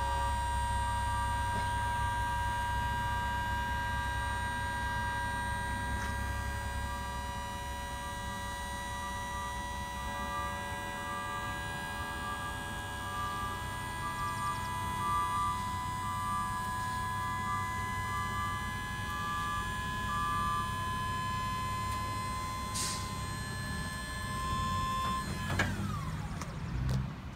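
Prinoth Raptor 300R's powered cab-tilt system running as the whole cab lifts forward: a steady whine made of several fixed tones over a low hum, with a broken on-off tone above it for much of the lift. It stops suddenly near the end, as the cab reaches full tilt.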